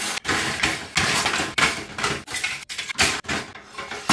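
Plastic baby-bottle tops and lids clattering as they are set one after another into a metal wire basket: a run of irregular knocks and rattles.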